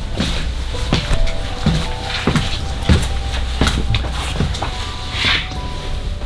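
Footsteps going down concrete stairs and along a cellar floor, a knock roughly every two-thirds of a second. Quiet background music with held notes plays underneath.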